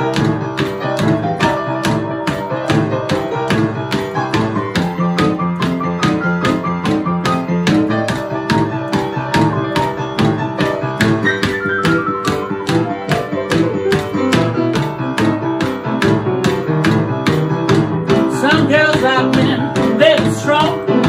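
Rhythm-and-blues grand piano playing an instrumental break at an up-tempo rocking pace, with an even beat of sharp ticks keeping time underneath.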